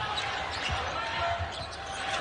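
A basketball being dribbled on a hardwood court, a few low thuds, over the steady murmur of an arena crowd.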